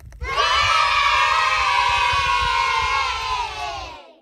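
A group of children cheering together in one long 'yay' that starts about a quarter second in, slowly sinks in pitch and fades out at the end.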